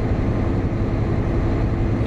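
Inside the cab of a Volvo 780 semi truck cruising at highway speed: the steady low drone of its Cummins ISX diesel engine mixed with road and wind noise, with a constant hum running through it.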